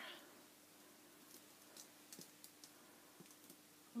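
Near silence: room tone with a faint steady hum and a few small, scattered clicks.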